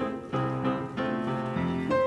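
Piano playing a ballet class accompaniment, chords and notes struck in a lilting, evenly spaced rhythm for a jumping exercise.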